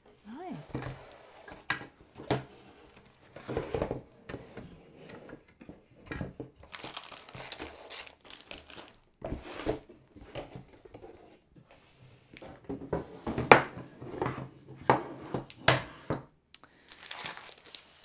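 Cardboard packaging and plastic wrapping rustling and crinkling as a folded wooden studio easel is lifted out of its box. Irregular sharp knocks of the wooden frame against the box come through, the loudest about two thirds of the way in.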